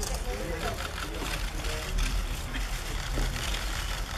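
Indistinct crowd chatter over a steady low rumble, with a few sharp clicks typical of press photographers' camera shutters.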